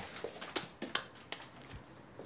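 Faint movement and handling noise: a handful of soft, scattered clicks and taps as a phone is swung around a small room.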